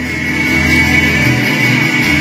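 Live Hawaiian band playing an instrumental passage on strummed acoustic guitars with a bass line.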